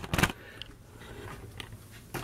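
A few quick knocks of the camera being handled and set in place, right at the start, then quiet kitchen room tone with a faint low hum and the odd small tick.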